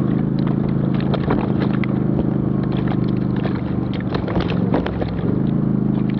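Off-road vehicle's engine running at a steady pace while driving a rough, rocky dirt trail, with frequent short knocks and rattles from the bumpy ground.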